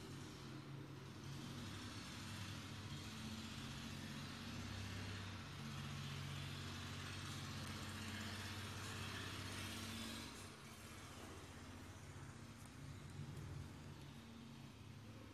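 A motor vehicle's engine running in the background, building at first, then dropping off sharply about ten and a half seconds in.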